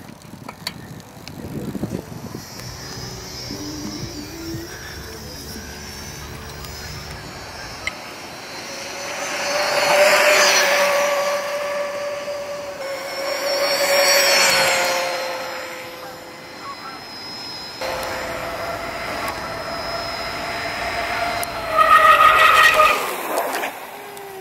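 Electric bike's motor whining over tyre noise on asphalt, swelling twice as the bike passes close and loudest near the end.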